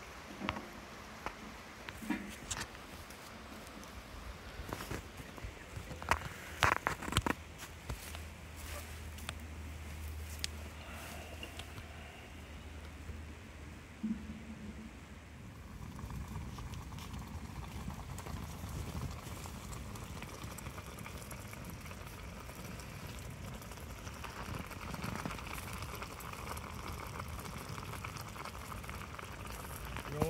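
Wood fire burning in a tent stove: scattered crackles and pops for the first half, then a steadier hiss from about sixteen seconds in.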